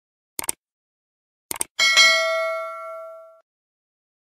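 Subscribe-button sound effects: two short mouse clicks about a second apart, then a bright notification-bell ding that rings out and fades over about a second and a half.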